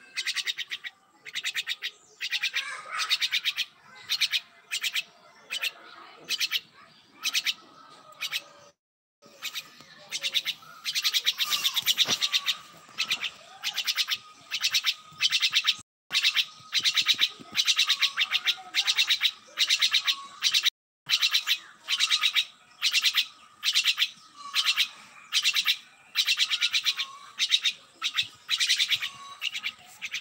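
Myna calling over and over with harsh, raspy notes, roughly two a second, broken by a few brief gaps.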